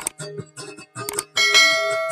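A long-necked lute plucked in quick repeated notes. About a second in, a mouse click is followed by a bright bell chime that rings out over the playing: the sound effect of a subscribe-button animation.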